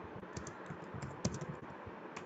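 Typing on a computer keyboard: irregular keystrokes clicking over a faint steady hiss.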